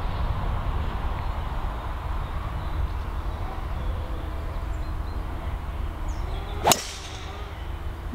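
A driver striking a teed golf ball: one sharp crack about two-thirds of the way in, over a steady low background rumble.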